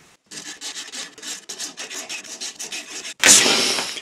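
A car-body file, its flexible blade bent convex, is drawn across wood held in a vice, giving one loud, coarse rasping stroke near the end. Before it comes a run of quick, light clicks and knocks.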